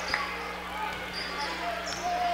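A basketball being dribbled on a hardwood gym floor over the arena's steady crowd murmur. A short thin squeak comes near the end.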